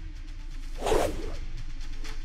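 A single short whoosh about a second in, swelling and fading within half a second, over quiet background music.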